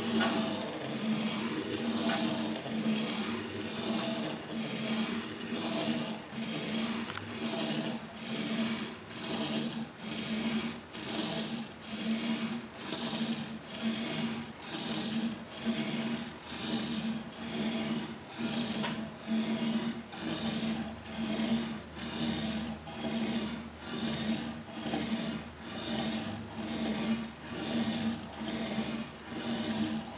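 Pen dragging across paper on a harmonograph's swinging table, a scratchy rubbing that swells and fades in an even rhythm about every three-quarters of a second as the table circles under it. A steady low hum runs underneath.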